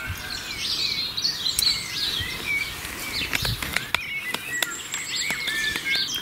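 Several small songbirds chirping and singing, many short quick notes and trills, over a steady low background rumble, with a few faint clicks.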